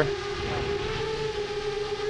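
Seven-inch long-range FPV quadcopter hovering close overhead while coming in to land, its motors and triblade props giving a steady, even-pitched hum.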